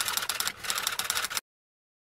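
Typing sound effect: a fast run of keyboard key clicks, with a brief pause about half a second in, that cuts off about a second and a half in.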